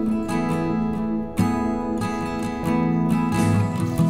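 Background music: an acoustic guitar strumming chords in a steady rhythm.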